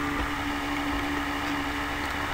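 Steady background hum and hiss with one constant low tone, no speech.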